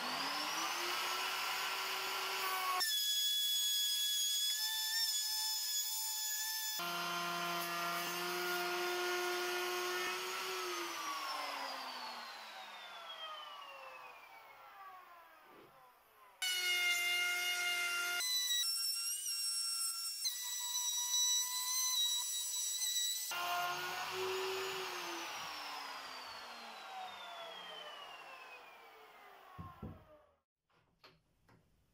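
Electric plunge router running at full speed with a high, steady whine while cutting a groove in the edge of a pine board for a loose-tenon joint. It spins up at the start and, once switched off, winds down with a long falling whine; it runs again from about halfway and winds down once more near the end. The sound changes abruptly several times.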